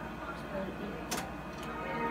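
Quiet room background with one sharp click or tap about a second in and a couple of fainter ticks around it.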